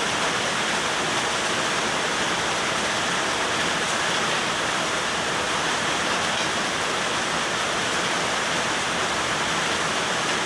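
Heavy rain falling on the garage, a steady, even hiss that holds at one level throughout.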